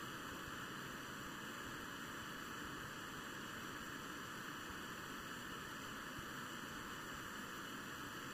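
Hot air rework gun blowing a steady hiss of air while reflowing solder on a metal standoff on a circuit board.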